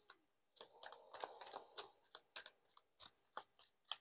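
A deck of tarot cards being shuffled by hand: quiet, irregular card snaps and clicks, with a longer run of rustling, sliding cards about a second in.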